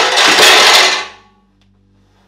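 A sudden, loud scraping clatter lasting about a second as a tall bar stool is shoved across the floor, dying away quickly.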